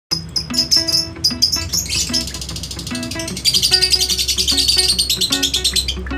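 Small birds chirping in quick high notes, running into a fast, dense trill about three and a half seconds in, over background music of plucked notes.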